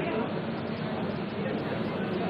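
Crowd chatter: many people talking at once, a steady babble with no single voice standing out.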